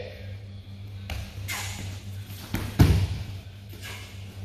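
A person thrown down onto a plastic-tarp-covered training mat lands with a heavy thud about three seconds in. Before it come lighter knocks and rustling from feet and bodies on the tarp.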